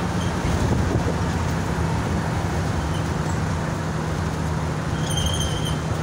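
Steady engine and road noise heard from inside a moving coach bus, a constant low drone. Near the end comes a brief high-pitched beep.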